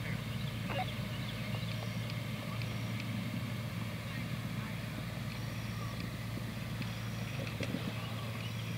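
Steady outdoor background noise with a constant low hum and a few faint knocks.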